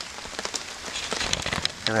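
Light rain falling on leaf litter: a steady hiss dotted with many small drop ticks.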